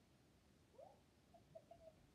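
Near silence: room tone, with a few faint, brief voice-like sounds in the second half.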